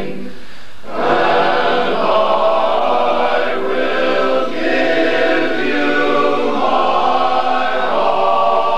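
A chorus singing sustained chords a cappella in four-part barbershop harmony. The sound drops briefly at the start and the full chord comes back in about a second in.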